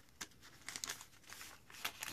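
Faint crinkling rustles of a plastic album sleeve and parchment paper as the sheet is slid into the pocket, in a few short scrapes rather than one steady sound.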